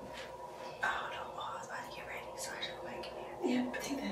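Whispered speech starting about a second in, over a faint steady hum.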